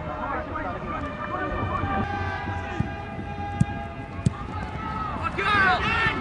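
Match ambience at a youth football game: scattered shouts from players and spectators, a held tone with several pitches for a couple of seconds near the middle, and a few sharp knocks.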